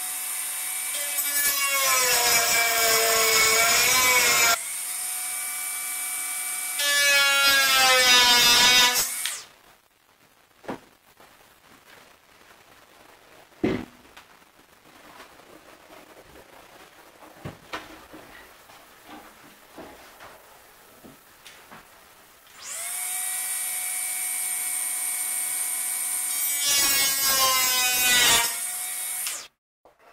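Handheld electric power tool trimming a plywood engine bed, its motor whine dipping and rising as it bites into the wood over a rasping grind, in two runs of several seconds. Between them come scattered knocks and one sharp thump as the heavy plywood bed is handled.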